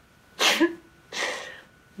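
A woman's stifled outburst behind her hand: a sudden sharp burst of breath about half a second in, then a hissing exhale that fades away.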